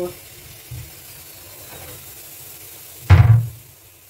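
A single dull knock about three seconds in, over a faint steady background.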